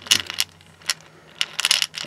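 Cast lead bullets shifting and clinking against each other and the glass inside a jar as it is tilted in the hands. Scattered sharp clinks, with a quick run of them near the end.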